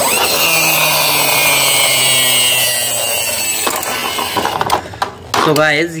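Plastic push-back toy car's gear motor whirring loudly as the car is pushed along the floor, its pitch falling slowly before it dies away about three and a half seconds in.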